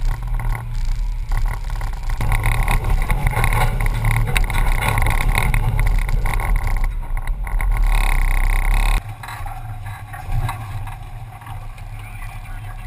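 Jeep Scrambler running as it crawls slowly over rock, heard through a camera mounted on its hood, with rattling and bumping. About nine seconds in the sound drops suddenly to a quieter, thinner sound.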